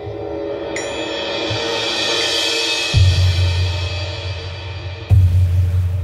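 Sampled orchestral percussion from the free VSCO 2 Community Edition library playing an avant-garde piece, with a very heavy reverb. A bright metallic strike opens a swelling cymbal-like wash, then deep drum hits land about three seconds in and again near the end.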